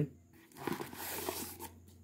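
Packaging wrapper crinkling and rustling as it is handled and pulled out of a cardboard box, an irregular rustle lasting about a second.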